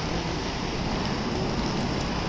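Steady street traffic noise: cars driving past on a city street, heard as an even hiss.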